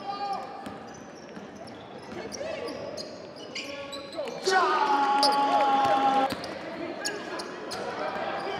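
Live game sound from a college basketball game in a large, echoing gym: a basketball bouncing on the hardwood, sneakers squeaking, and voices calling out. About halfway through, a loud held tone with a steady pitch lasts almost two seconds.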